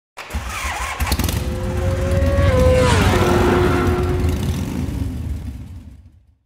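Motorcycle engine passing by: it grows louder, its pitch drops as it goes past about three seconds in, and it fades away.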